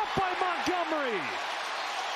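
A man's voice giving a few short exclamations that fall in pitch during the first second and a half, over the steady noise of a stadium crowd in the TV broadcast.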